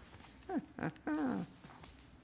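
Three short vocal sounds, each falling in pitch, the last one longer and wavering.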